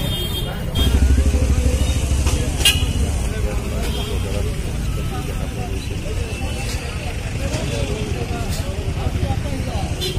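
Busy city street: a motor vehicle's engine running close by with a low rumble that swells about a second in, over background chatter of people and occasional horn toots.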